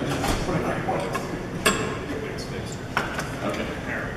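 Scattered clinks and knocks of instruments and music stands being handled, the sharpest about one and a half seconds in and another near three seconds, over a murmur of voices in the room.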